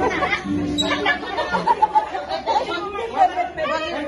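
Several people chattering at once, their voices overlapping.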